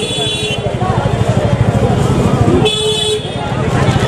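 Vehicle horn honking twice in street traffic: the first honk ends about half a second in, and a shorter one comes near three seconds. Voices and the low rumble of traffic run underneath.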